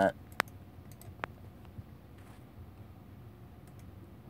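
Computer mouse buttons clicking: two sharp clicks about a second apart, then a few fainter ones, over a faint low hum.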